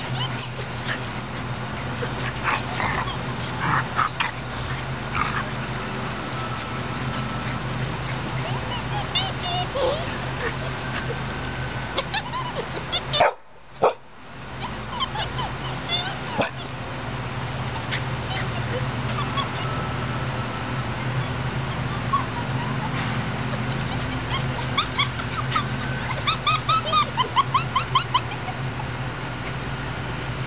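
Borador puppies yipping and whimpering in short scattered calls as they play, with a quick run of high yips near the end, over a steady low hum.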